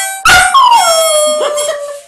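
Border terrier howling along to a harmonica. A loud sudden burst comes about a quarter second in, then one long howl slides down in pitch and holds steady. The harmonica's tones are faint beneath it.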